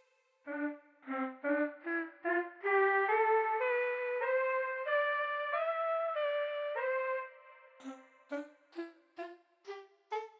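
GarageBand's Girls Choir keyboard patch, a sampled girls' choir voice, playing single notes. Five short notes climb at first, then a run of longer connected notes steps upward, and near the end come short clipped notes about two a second.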